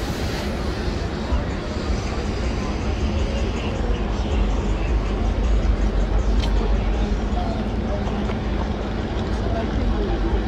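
Busy city street: steady traffic noise with indistinct chatter of passing pedestrians and a constant low rumble.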